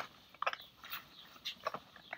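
Hands working items into a nylon backpack: scattered short clicks and rustles of fabric and packed gear.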